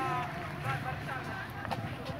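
Indistinct voices of people talking, over a steady low outdoor rumble.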